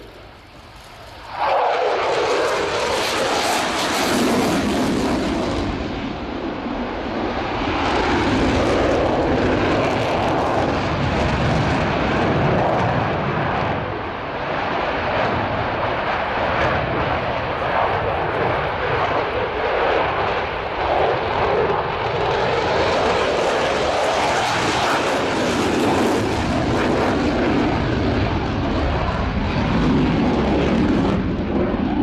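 Eurofighter Typhoon's twin Eurojet EJ200 turbofan engines, loud jet noise that cuts in suddenly about a second and a half in. It then runs on continuously, swelling and easing in loudness as the fighter manoeuvres.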